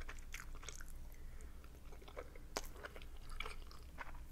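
Close-miked chewing of a soft boiled dumpling: quiet wet mouth clicks and smacks, scattered and irregular, with one sharper click about two and a half seconds in.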